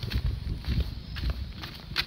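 Footsteps on dry dirt ground: a few irregular steps with low thumps and short scuffs.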